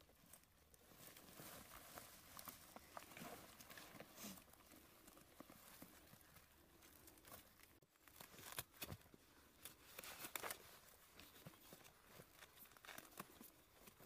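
Faint rustling and crinkling of a bandage and clothing as a casualty's leg is bandaged, with scattered soft handling clicks and a couple of slightly louder rustles about two-thirds of the way in.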